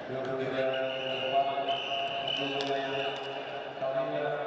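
Voices shouting in long, held calls in an arena during a wrestling bout, with a few sharp knocks in between.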